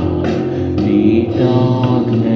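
Rock band music in an instrumental passage of a home-recorded symphonic metal cover: held chords over a strong bass line, with drum hits about twice a second.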